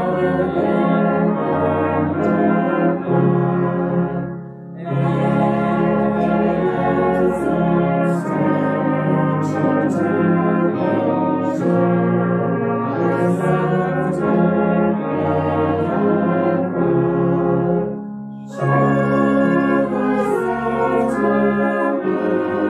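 Brass band of tubas, euphoniums and horns playing a slow hymn tune in sustained chords, with short breaks between phrases about four seconds in and again near the end.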